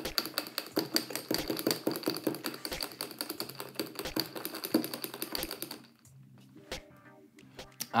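Long metal bar spoon stirring a beer cocktail in a tall glass: rapid clinking and rattling against the glass that stops about six seconds in.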